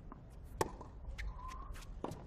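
Tennis racket striking the ball in a baseline rally on a hard court: one sharp loud hit about half a second in, with fainter short clicks of further ball contacts after it.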